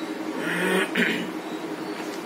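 A man clearing his throat: two short rough bursts about half a second apart, the first a little longer.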